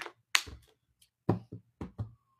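Several short taps and knocks from handling, the loudest about a third of a second in, with a few lighter clicks and thuds following over the next second and a half.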